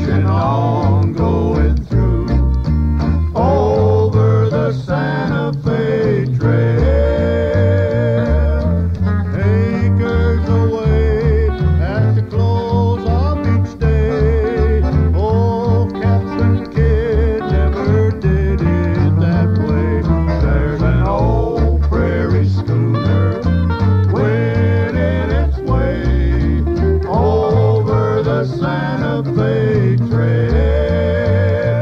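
Classic country music played by a small string band, with acoustic guitar and a steady bass line and a wavering melody line over the top.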